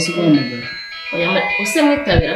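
Speech over background music with sustained high keyboard-like tones; the voice breaks off briefly about halfway through.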